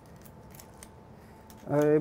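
Faint, dry, irregular crackling clicks of seasoning, pepper and salt, being ground or crumbled by hand over a plated dish. A man starts speaking near the end.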